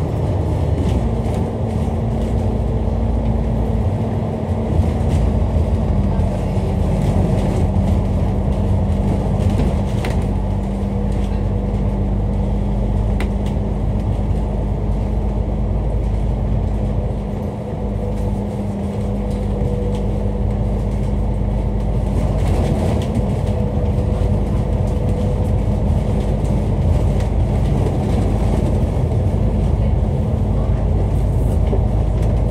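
Cabin sound of a Dennis Enviro500 MMC double-decker bus under way: engine and drivetrain running steadily with road noise. A held whine in the drivetrain drops in pitch about six seconds in, then stays level.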